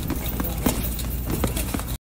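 Boxing gloves punching heavy bags: irregular thuds and smacks from several bags at once, a few a second, the loudest about two-thirds of a second in.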